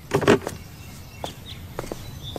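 A short rustle of foliage as someone pushes through bamboo and bushes, followed by a few faint, light footsteps.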